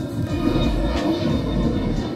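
Jet airliner flying overhead, a steady rumbling roar, over faint background music.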